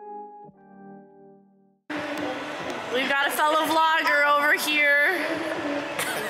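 Soft, sustained background music fades out; then, after a sudden cut about two seconds in, a woman's voice makes drawn-out sounds that rise and fall in pitch over a steady hiss of room noise.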